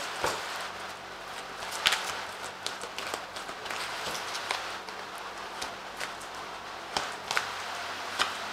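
Tarot cards being drawn by hand from a deck and laid down on a cloth-covered table: soft rustles and a few sharp card clicks, the clearest about two seconds in and twice near the end, over a faint steady hiss.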